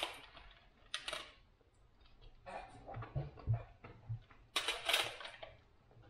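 A metal spoon clicks and scrapes in a plastic yoghurt pot, with crunching as hard chocolate pieces are chewed. The sounds come in short separate bursts, the loudest at the start and about five seconds in.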